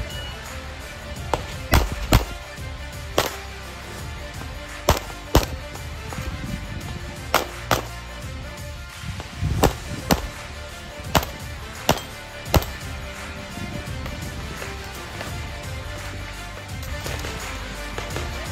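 A course of fire from a 9mm pistol: about a dozen sharp shots over roughly eleven seconds, mostly in quick pairs, after a short shot-timer beep at the start. Background music plays throughout and is all that remains in the last few seconds.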